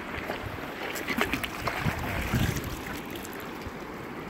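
Shallow river running over stones, with a cluster of splashes and knocks about one to two and a half seconds in as a hooked trout is brought into a landing net.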